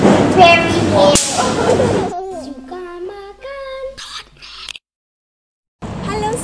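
Laughing talk in a busy shop, cut by a sharp swish about a second in; then a child's voice sings a short tune in stepping, sliding notes with the background noise gone, and stops about a second before the end.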